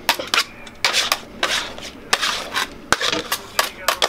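Metal scraper and candy bars clinking and scraping on a marble candy table as a slab of hot raspberry ribbon candy is worked, a quick irregular run of sharp clicks and knocks with a couple of longer scrapes near the middle.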